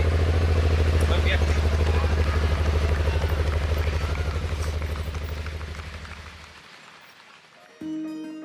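Several adventure-touring motorcycle engines idling together, a steady low throb that fades away over several seconds.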